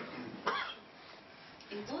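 A single short cough about half a second in, followed by quiet room tone.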